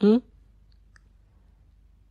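A man's brief questioning "hmm?" at the start, then near silence: room tone.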